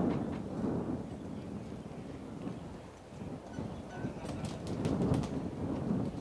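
Hushed outdoor golf gallery with a low wind rumble on the microphone while a short putt is lined up. A few faint clicks come near the end.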